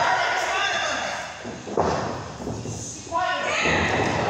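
Heavy thuds on a wrestling ring's mat and boards as two wrestlers stomp and grapple, two sharp ones near the middle and about three seconds in, with voices calling out over them.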